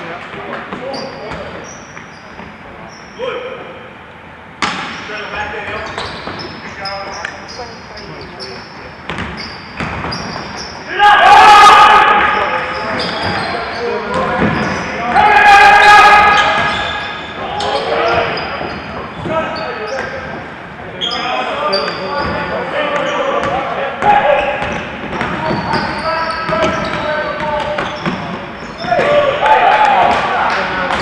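Basketball game play on an indoor court: the ball bouncing, sneakers squeaking on the floor, and players' voices, with two loud spells of shouting about a third and about half way through.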